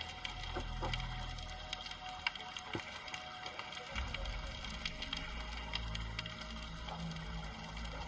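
Underwater ambience over a coral reef: irregular scattered clicks and crackles over a low rumble that rises and falls.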